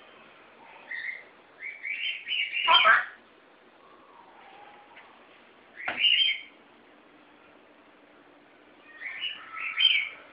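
African grey parrot vocalizing in short, high-pitched bursts: a brief call about a second in, a run of calls peaking just before three seconds, one call near six seconds and another run near the end.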